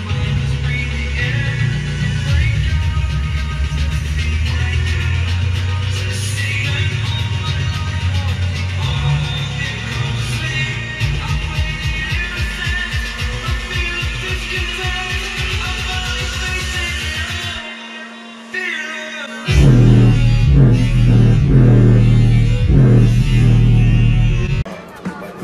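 Bass-heavy music played loudly through a 4-inch mini subwoofer in a small MDF box, its cone pushed hard. The deep bass drops out for about two seconds near the end, then comes back louder.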